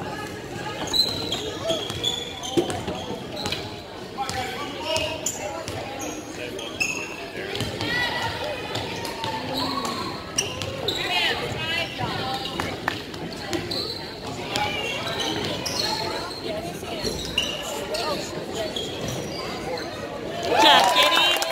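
Basketball being dribbled and bouncing on a gym's hardwood floor, repeated knocks, mixed with indistinct voices of players and spectators echoing in the hall.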